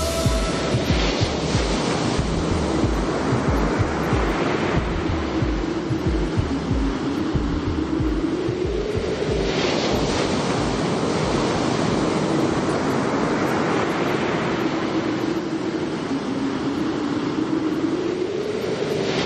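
Sea surf washing steadily, with a single low held tone that slowly wavers in pitch underneath.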